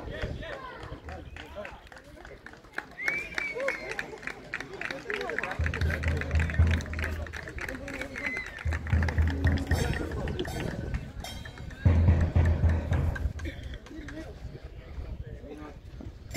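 Voices of people at an outdoor football pitch, with sung or chant-like sounds strongest in the first half. Three deep rumbles, each about a second long, come roughly 6, 9 and 12 seconds in.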